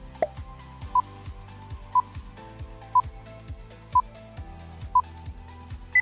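Quiz countdown timer beeping: a short electronic beep about once a second, five times, over background music with a steady beat. A brief blip sounds just after the start.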